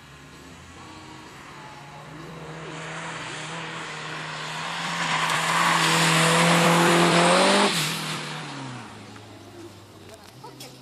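A racing car on wet asphalt coming closer at full throttle, its engine note held high and slowly climbing as it grows louder, with tyre noise rising alongside. About three-quarters of the way through the sound drops sharply and the engine pitch falls away.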